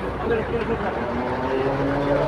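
A steady engine hum that holds on about a second in, under faint talking voices.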